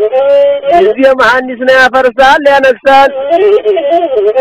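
Ethiopian azmari song: a singer's voice with long held notes that bend and waver, broken by quick ornamented runs, over the bowed single-string masinko.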